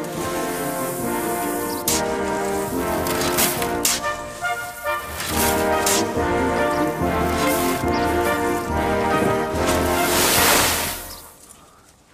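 Background music of sustained, chord-like notes, with a few short noisy hits over it and a swell of noise just before the end, fading out near the end.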